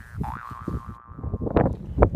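Cartoon-style intro sound effects: a whistle-like tone that slides up and then holds, with scattered low knocks under it, and a short rising burst about a second and a half in that is the loudest part.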